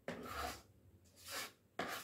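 Knife cutting through papaya on a plate in three short strokes, each under about half a second.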